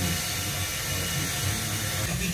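FM radio static from an AV receiver's tuner on 87.5 MHz: steady hiss with a weak, long-distance broadcast signal buried under the noise.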